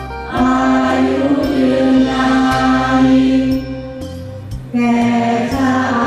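A large crowd of students singing a wai khru (teacher-homage) song in unison over musical accompaniment, in long held notes with a percussion stroke about once a second. The phrase falls away a little after three and a half seconds, and a new one starts near five seconds.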